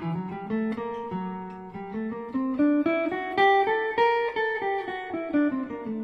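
Gibson L-5 archtop jazz guitar playing a single-note melodic minor scale line, climbing note by note and then coming back down near the end.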